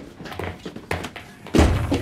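Thuds and knocks from people running and jumping: a few light knocks, then a heavy thump about one and a half seconds in.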